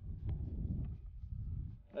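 Wind buffeting the microphone: an uneven low rumble, with a couple of faint clicks. No gunshot.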